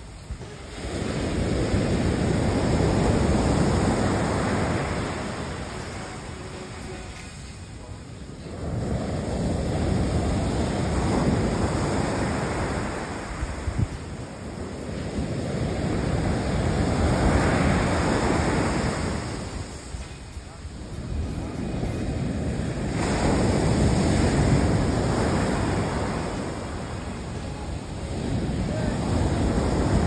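Ocean surf breaking on a sandy beach, each wave rising to a rush and fading as it washes up the sand, in slow surges about every six to seven seconds.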